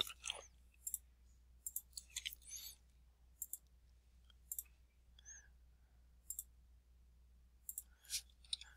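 Computer mouse button clicking, faint and irregular, about ten single clicks as line segments are picked one after another to trim them in a CAD program.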